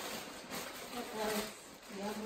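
Rustling and crinkling of plastic grocery packaging as items are handled and unpacked on a table, with a faint voice briefly partway through.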